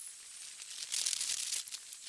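Kayak paddle strokes: water swishing and dripping off the paddle blades, a hissy splash that swells about a second in.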